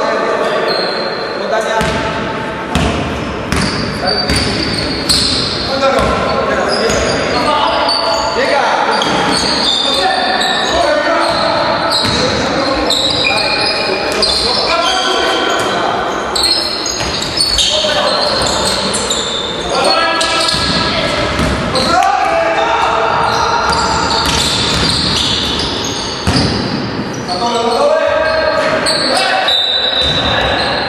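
A basketball bouncing on a gym floor during play, with players' shouts and calls. Both echo in the hall.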